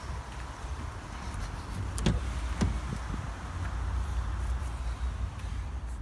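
Peugeot 2008 driver's door being opened, with a sharp latch click about two seconds in and a second knock just after, over a steady low rumble.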